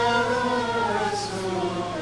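Voices singing slow plainchant, long held notes moving stepwise from one pitch to the next, over a steady low hum.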